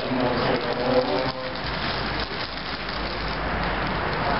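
A voice is heard for about the first second, then stops, leaving steady outdoor noise: an even hiss with a low rumble underneath.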